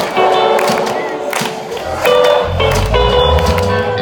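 A live rock band playing: bright electric guitar notes over percussive hits, with a heavy bass and drum low end coming in about halfway through.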